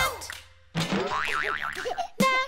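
Cartoon boing sound effects: a springy boing fades out in the first half second. After a brief gap, a second one starts with a pitch that wobbles up and down several times.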